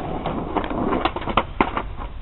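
Skateboard wheels rolling on asphalt, then a run of sharp clacks and knocks as the board hits the pavement in a failed trick attempt.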